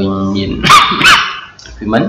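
A dog barking twice in quick succession, loud and sharp, just after a short burst of speech.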